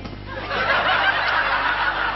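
Audience laughing, swelling about half a second in.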